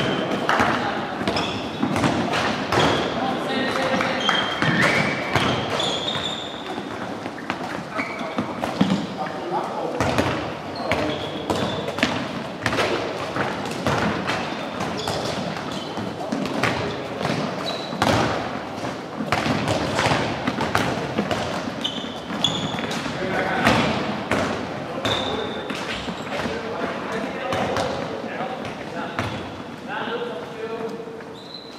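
Handballs bouncing and thudding on a wooden sports-hall floor throughout, many irregular impacts echoing in the large hall, with short high squeaks from players' shoes now and then.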